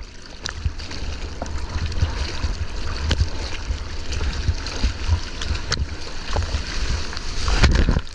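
Seawater sloshing and splashing around a surfboard's nose as the board is paddled, heard close on a nose-mounted camera, with a low rumble and a few sharp spatters. The splashing grows louder near the end as water washes over the camera.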